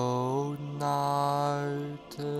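Background meditation music: long, chant-like held notes that step up in pitch about half a second in and break off briefly near the end.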